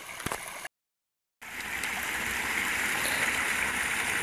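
Small forest stream splashing over a little cascade: a steady rush of water that swells slightly. Just under a second in there is a brief gap of dead silence, after which the water sound comes in louder.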